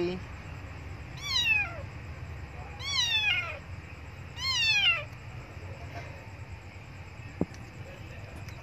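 Young tabby kitten meowing three times, about a second and a half apart, each meow a high cry that falls in pitch: the kitten is crying to be fed.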